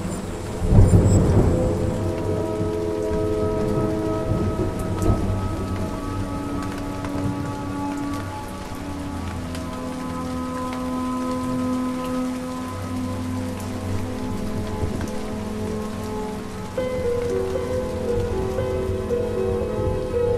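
Thunderclap about a second in, rumbling away over steady rain, with a smaller crack around five seconds. Under it runs a slow ambient music bed of held notes, whose chord shifts near the end.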